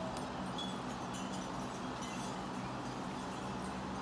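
Faint, steady background of low humming tones, with a few brief high ringing tones over it.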